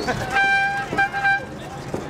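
A horn sounding: one toot of about half a second, then two quick shorter toots, over the chatter of a marching crowd.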